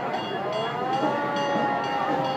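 Fire engine siren winding up in a rising wail, then holding a steady pitch.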